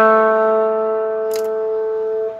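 Electric guitar played through a Line 6 HX Effects multi-effects processor, one held note ringing out and slowly fading, with a faint click about one and a half seconds in. The unit is passing signal again after its broken input and output solder joints were repaired.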